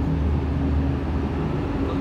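A motor vehicle engine idling close by: a steady low hum with a faint higher tone held throughout.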